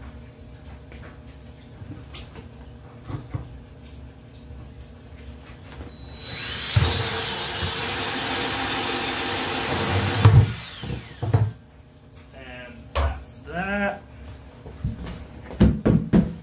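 Cordless drill cutting through the thin plastic bottom of a bucket: about six seconds in it runs for roughly four seconds with a steady high whine, then stops, followed by a few knocks as the bucket is handled.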